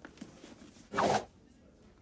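A single short rustle about a second in.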